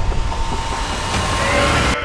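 Loud rumbling sound effect, a deep low rumble under a hissing wash of noise, with faint rising tones near the end. It cuts off abruptly.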